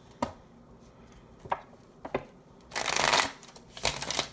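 Tarot cards being handled and shuffled: a few sharp taps and flicks of card on card, then a brief riffling burst about three seconds in.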